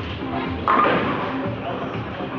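Background music playing, with voices under it. A sudden loud thump comes about two-thirds of a second in.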